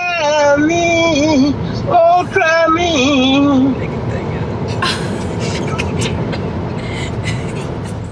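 An older woman singing over a phone call, her voice wavering up and down in pitch, for about the first three and a half seconds. After that, a steady rush of car road noise with a few clicks.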